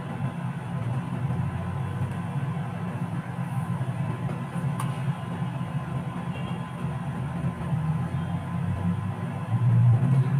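Steady low-pitched background din from outside, unchanging throughout.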